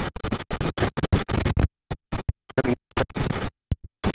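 Scratching and rubbing noises in a quick string of short bursts, each cutting off abruptly.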